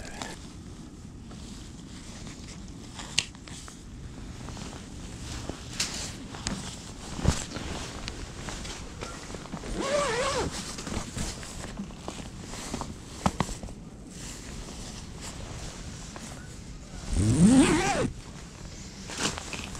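Footsteps and rustling on snowy ice and inside a fabric ice-fishing shelter: scattered knocks and fabric or zipper-like scrapes. A brief pitched, voice-like sound comes about ten seconds in, and a louder one just before the end.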